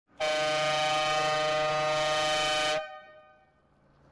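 Vehicle horn, one long steady blast of about two and a half seconds that stops sharply, leaving a short fading tail.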